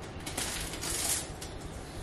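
Protective plastic film being peeled off the edge of a wall-mounted TV by hand: a few light clicks, then a crackling rustle about a second in.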